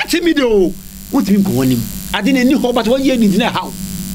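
Two men talking, with short pauses, over a steady low electrical buzz.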